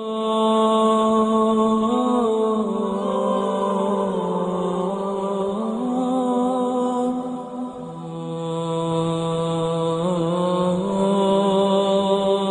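An unaccompanied nasheed sung with vocals only and no instruments. The voice holds long, drawn-out notes with small ornamental turns. There is a short dip about eight seconds in before the singing swells again.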